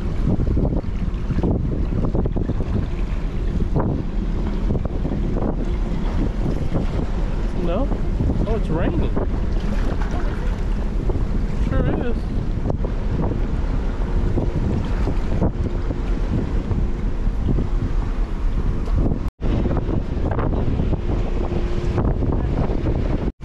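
Loud, steady wind buffeting the microphone on the open deck of a cruise ship at sea, a continuous low rumble. The sound cuts out for an instant about three seconds before the end.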